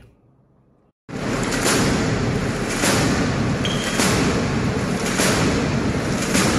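Anti-aircraft gun firing repeatedly into the sky, one shot about every second, to bring on hail or rain. A dense, steady downpour sounds throughout. The sound starts suddenly about a second in, after near silence.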